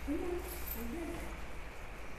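A woman's voice, faint and far off, saying "come on" in two short pitched syllables in the first second or so.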